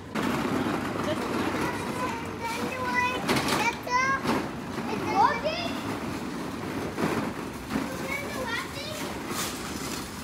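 High-pitched children's voices and other people's chatter in the background, over the steady rolling of a loaded flatbed trolley's wheels.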